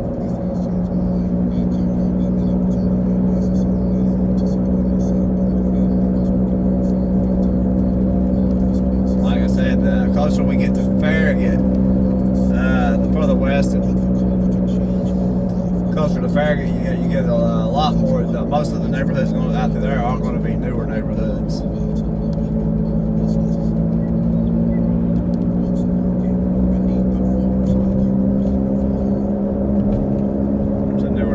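Steady drone of a car's engine and road noise heard from inside the cabin while cruising, with a voice over it for several seconds in the middle.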